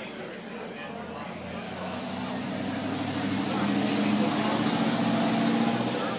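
A motor vehicle passing on the street, its engine note and road noise growing louder to a peak about four to five seconds in, then starting to fade, over diners' chatter.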